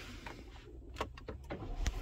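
A few faint, short clicks over a low rumble that grows louder toward the end, inside a car cabin.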